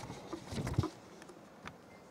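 Paper being handled at a lectern microphone: a short cluster of rustles and soft knocks about half a second in, then a single light tick near the end.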